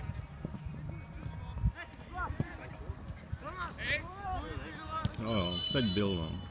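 Players and onlookers at a football match shouting and calling out, with a sharp thud nearly two seconds in. Near the end comes a louder falling shout over a high, steady whistle-like tone.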